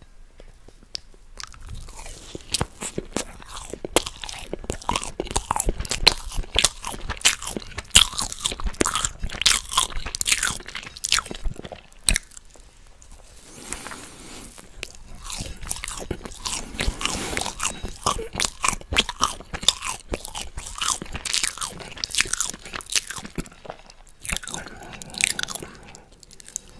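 Close-miked chewing and loud wet mouth smacking as German quark balls (fried quark dough balls) are bitten and eaten, a dense run of irregular clicks. There is a short pause about halfway, then finger licking and more chewing.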